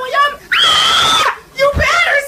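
A loud, high-pitched voice in short wavering cries, with one long note held for most of a second about half a second in.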